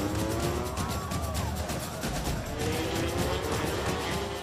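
Racing motorcycle engines accelerating, their pitch rising slowly into the first half-second and again over the last second and a half, with music playing underneath.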